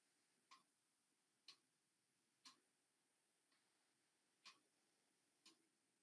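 Near silence with faint, regular ticking, one tick each second; the tick about halfway through is weaker than the rest.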